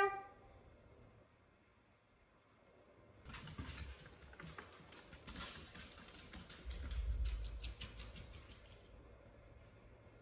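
Paper rustling and crackling as a wrapped gift is torn open, a dense run of crackles starting about three seconds in and lasting about six seconds, with a low handling bump partway through.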